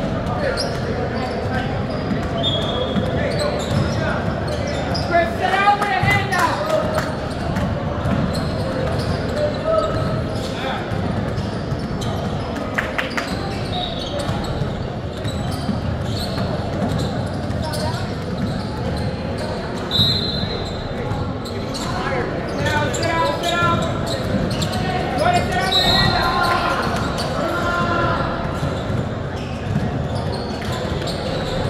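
Basketballs dribbled and bouncing on a hardwood gym floor during play, with voices calling out and a few short high squeaks, all echoing in a large hall.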